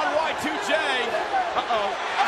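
A man's voice calling a televised wrestling match over steady arena crowd noise.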